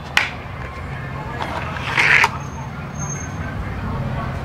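Plastic toy launcher track being handled as a die-cast toy car is loaded into it: a sharp click just after the start and a short plastic rattle about two seconds in, over a steady low hum.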